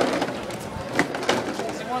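A few sharp knocks, the first right at the start and two more about a second in, over background voices and crowd chatter.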